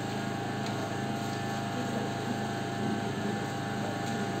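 A steady low hum with a faint hiss, unchanging throughout.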